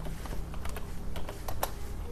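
Light clicks of computer keys at an irregular, unhurried pace, half a dozen or so, the sharpest about one and a half seconds in.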